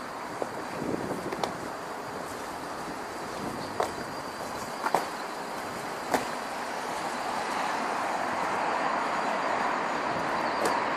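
Road traffic running as a steady rushing noise, swelling as a vehicle grows louder over the last few seconds, with a handful of sharp clicks scattered through the first six seconds.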